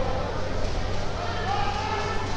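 Voices of people at ringside calling out over the general noise of the hall, with a steady low electrical hum underneath.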